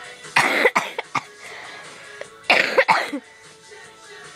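Two loud, breathy vocal bursts from a person close to the microphone, about two seconds apart, with pop music playing faintly underneath.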